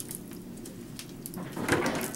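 Gloved hands sloshing and rinsing in a bucket of plaster water: small scattered splashes and drips, with a louder splash near the end.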